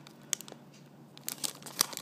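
Clear plastic packaging crinkling in short, scattered crackles as fingers squeeze a soft foam squishy toy through the bag, busier in the second half.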